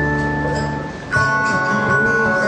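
Live acoustic guitar music with no singing. Held notes die away to a brief dip about halfway through, then a new chord rings in.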